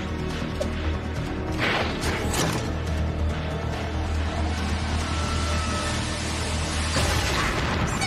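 Cartoon soundtrack: a steady low droning music score under mechanical sound effects, with sudden whooshing sweeps at about two seconds in and again near the end.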